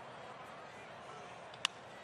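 Faint, steady ballpark crowd noise, then a single sharp crack of a bat meeting a pitched ball about one and a half seconds in.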